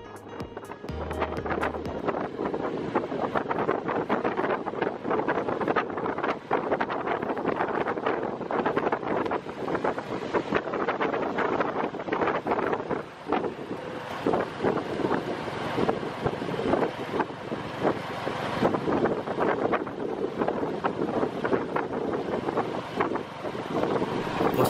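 Riding in a Cambodian tuk-tuk (a motorcycle pulling a passenger carriage): the motorcycle engine and road noise run steadily, with wind buffeting the microphone in frequent short crackles.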